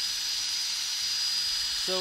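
Turning tool cutting a spinning wooden bowl on a wood lathe: a steady hiss of shavings being sheared off, with a thin high tone running through it.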